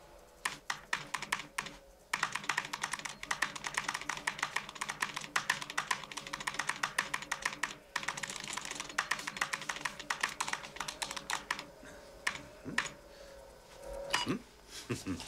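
Fast typing on an Apple Macintosh Plus keyboard: a few scattered keystrokes, then a long rapid run of key clicks that breaks off briefly about eight seconds in, picks up again, and thins to sparse keystrokes near the end.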